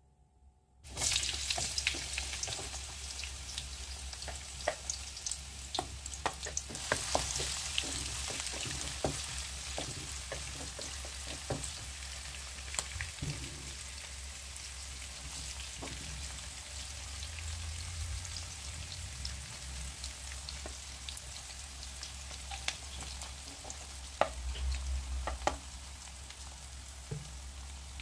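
Chopped red onions sizzling and crackling in hot oil in a wok, starting suddenly about a second in, with a burst of louder crackles near the end. A low steady hum runs underneath.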